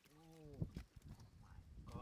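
A person's short hum, about half a second long and rising then falling in pitch, followed by a dull thump and the low rustle of hands digging in wet mud.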